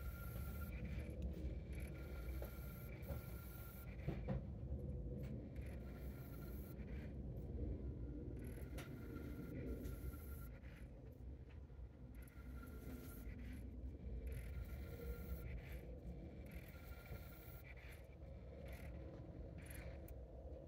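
Sony MXD-D3 MiniDisc drive reading the disc's table of contents: faint mechanical whirring, with a high whine that comes and goes and a small click about four seconds in.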